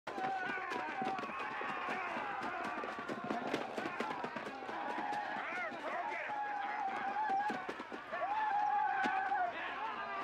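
Several men yelling and shouting wordlessly as they run, over a steady patter of running footsteps. There is a long drawn-out yell just before the end.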